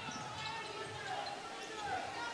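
Basketball being dribbled on a hardwood court, with voices murmuring in the gym behind it.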